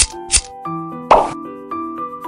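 Background music of light mallet-like notes, with two quick scissor snips through thin plastic at the start, then a louder short noise about a second in.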